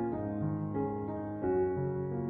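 Slow, relaxing solo piano music: a few notes struck in turn, each left to ring into the next.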